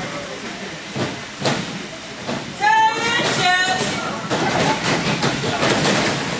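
Hall noise at a small-crowd wrestling match: a steady din of chatter, with scattered knocks and scuffs from the ring and a sharp thud about a second and a half in. A little under three seconds in, one voice shouts loudly for about a second, wavering in pitch.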